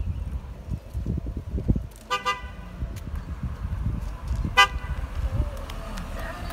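Car horn on a Mitsubishi Eclipse Spyder GT honking twice: a half-second toot about two seconds in and a short tap a couple of seconds later, over a low rumble.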